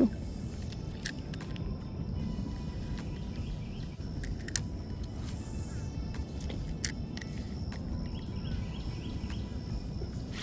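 Wind rumbling on the microphone over open water, with a few light clicks from the spinning reel and faint bird chirps.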